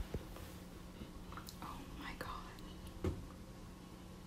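Faint, hushed whispering, with a soft knock right at the start and another about three seconds in, over a low steady hum.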